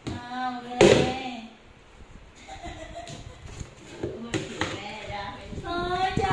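A large plastic bin tipping over and hitting a tiled floor with one loud thump about a second in, and a smaller knock a few seconds later. A person's voice goes on under it.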